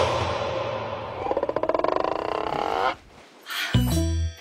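Comedy TV-drama scoring: a cartoonish sound effect with a fast wobble, lasting about three seconds, cuts off abruptly. A short burst of music comes in near the end.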